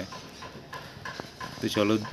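A man's voice pausing and then speaking again near the end, over low, even background noise with a couple of faint clicks.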